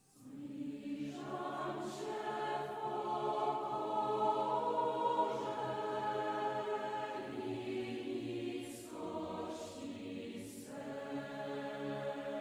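Voices start singing a slow church hymn, in long held phrases with short breaks between them.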